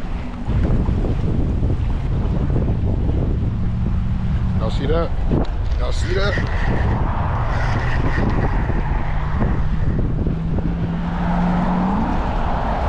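Wind buffeting the microphone, with a steady low engine drone coming in about three to four seconds in and rising slightly in pitch near the end.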